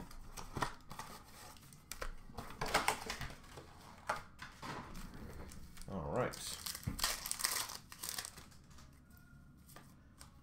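Hockey card packs being torn open, their plastic-foil wrappers crinkling and ripping in scattered, irregular bursts, with cardboard and cards rustling in the hands.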